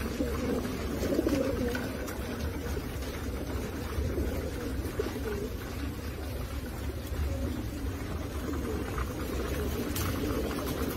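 A flock of crated racing pigeons cooing, many coos overlapping without a break, over a low steady rumble.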